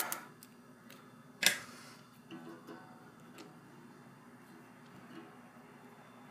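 Rubber band and pencil being handled on an acoustic guitar's neck: one sharp snap about a second and a half in, then faint ringing from the strings and a few small clicks.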